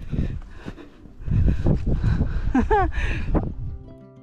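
Wind buffeting the microphone as a low, uneven rumble, loudest from about a second in, with a brief laugh near the end; guitar music comes in just before the end.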